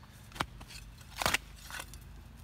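A long-handled metal digging tool jabs into turf and soil, prying the cut sod loose. There are three sharp crunches of tearing roots and soil, the loudest about a second and a quarter in.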